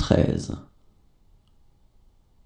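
A voice finishing the spoken French number "cent quatre-vingt-treize" (193), ending about half a second in, followed by faint room tone.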